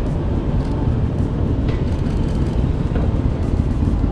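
Motorcycle engine running with a low, steady rumble as a rider goes by on the street.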